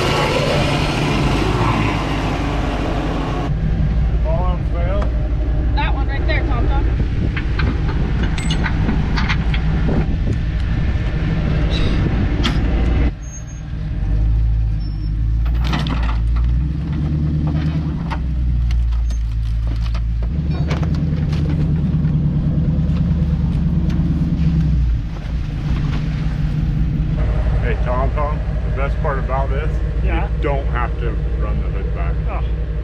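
Off-road vehicle engines running steadily at low speed as a recovery rig tows a disabled Jeep, heard in several short clips that change abruptly. Indistinct voices come and go.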